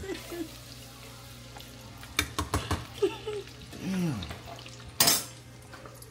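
Boudin ball in a Hot Cheeto crust frying in a pot of oil, the oil sizzling steadily, while a metal spoon clinks against the pot a few times about two seconds in. A single sharp knock stands out about five seconds in.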